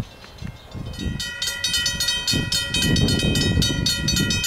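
Railway level crossing alarm bell that starts ringing about a second in, with rapid, even strokes and several steady ringing tones: the crossing warning for an approaching train. Gusts of wind rumble on the microphone.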